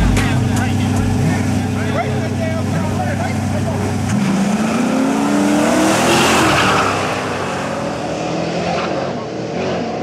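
Two drag-racing cars, a Ford Mustang on nitrous and a naturally aspirated Chevrolet Camaro, sit at a loud steady idle on the start line. About four seconds in they launch, their engine notes climbing as they accelerate. They pass close by with a rush of engine and tyre noise, then fade off down the road.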